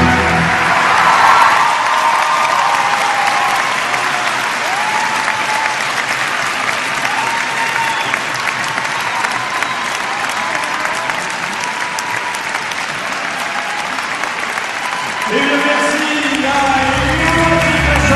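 Large arena audience applauding and cheering as a piece of music ends. About fifteen seconds in, new music begins.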